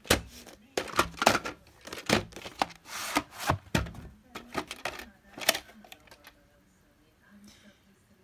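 A VHS tape and its case being handled: a run of sharp plastic clicks, knocks and rustles as the case is turned over and opened and the cassette is taken out. The clicks die away about six seconds in.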